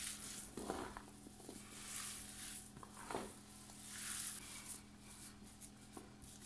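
Bare hands kneading a mixture of bulgur and raw minced meat against a dimpled stainless steel tray: repeated soft squishing and rubbing strokes with a few sharper slaps, over a low steady hum.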